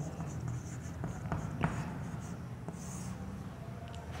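Chalk writing on a chalkboard: a few short, sharp scratches and taps of the chalk as a word is written.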